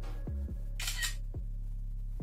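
Camera shutter click sound effect, one short burst about a second in, played as part of a video-editing screenshot effect. Behind it runs electronic music with a deep kick-drum beat.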